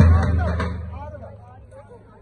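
A last stroke of a davul bass drum, and the traditional dance music dies away within about a second, leaving a murmur of people's voices.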